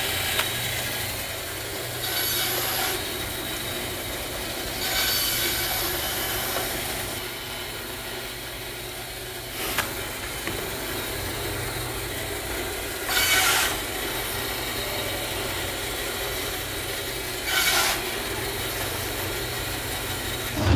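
Bandsaw running steadily, its blade cutting short lengths off a white plastic tube. Each of several cuts is a brief rasp over the saw's hum, about two, five, thirteen and seventeen seconds in.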